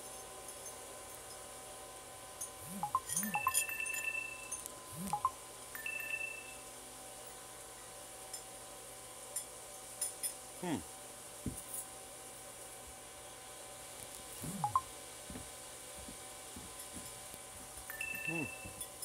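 Two short electronic beeps a couple of seconds apart, each a pair of high tones, over a low steady hum, with scattered light clicks and a few brief low vocal sounds.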